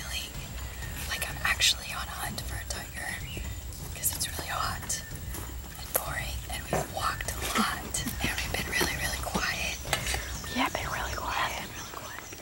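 Hushed whispering between several people, broken into short phrases, with scattered small clicks and rustles over a steady low rumble.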